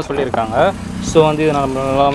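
Speech: a voice talking, with a long drawn-out word in the second half.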